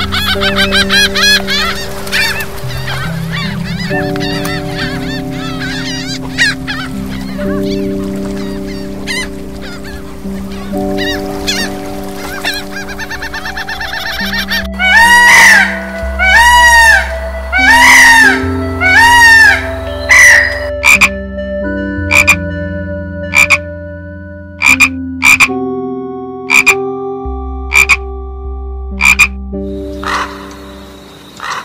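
Soft background music with held chords under a run of bird calls. Rapid gull calls fill the first half, then about six loud peacock calls come a second apart. After that, a string of about a dozen short, sharp calls follows.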